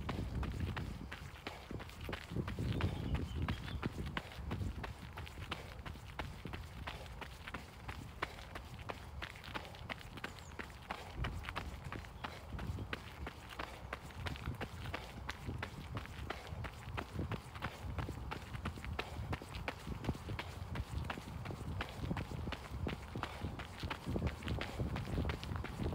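Running footsteps on a gravel path, an even, steady stride of crunching foot strikes.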